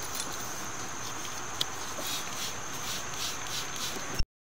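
Insects chirping in a steady, high, pulsing rhythm over a low background hiss, with one faint click partway through.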